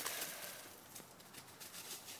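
Faint footfalls and rustling on dry leaf-covered ground as a dog and a person move for a frisbee throw, with a few light clicks near the start.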